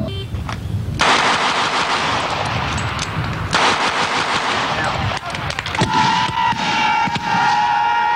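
Rapid, dense gunfire: many shots running together in two long stretches, with a short break about three seconds in. A long steady tone joins about six seconds in.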